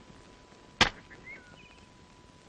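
A single sharp hit a little under a second in, over quiet outdoor ambience with a few faint bird chirps.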